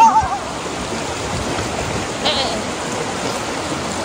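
Shallow rocky river flowing over stones, a steady rushing of water.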